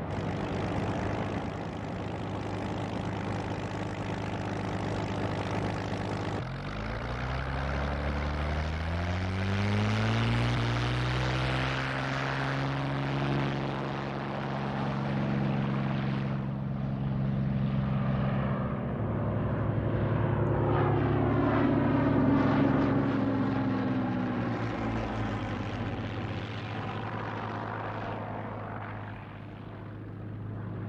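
Two Curtiss P-40 fighters' piston engines running at idle, then opened up about six seconds in, their pitch climbing as they run up for the takeoff roll. Later the engine sound swells and falls away as the planes pass, fading near the end.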